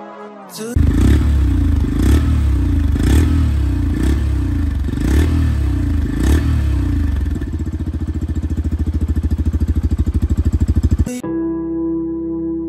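Yamaha FZ-S V4 Deluxe motorcycle's single-cylinder, air-cooled four-stroke engine blipped six times, about once a second, each rev rising and dropping back. It then settles into a steady, even idle that cuts off abruptly.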